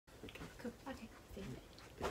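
A baby making several short babbling vocal sounds.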